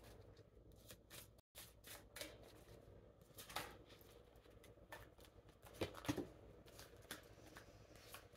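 Tarot deck being shuffled by hand: faint rustling and soft clicks of card edges slipping against each other, with a few sharper snaps about six seconds in.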